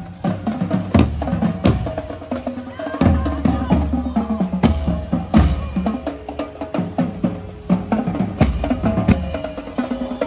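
Marching drumline playing a street cadence: bass drums, snare drums and cymbals struck in a dense, continuous rhythm with loud accented hits.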